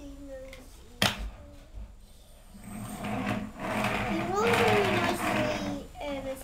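A single sharp click about a second in. Then for about three seconds a child's voice makes a loud buzzing sound effect whose pitch rises and falls near the end.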